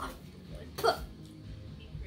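A boy makes a single short, abrupt vocal sound a little under a second in, a brief voiced yelp-like burst.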